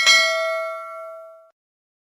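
Notification-bell chime sound effect from a subscribe-button animation: one bright ding with several clear ringing tones that fades and cuts off suddenly about a second and a half in.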